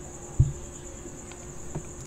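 A steady, high-pitched, finely pulsing trill in the background, with a single low thump about half a second in.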